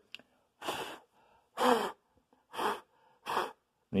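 Four short puffs of breath, about once a second, blown across hydrographic film floating on water to push a trapped bubble out from under it.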